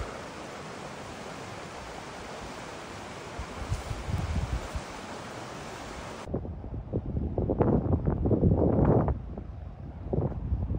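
Outdoor wind noise: a steady hiss for about six seconds, then, after an abrupt change, wind buffeting the microphone in uneven low gusts that are loudest near the end.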